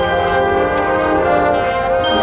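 Marching band's winds and brass holding loud sustained chords, several notes sounding together, with a few notes shifting about midway.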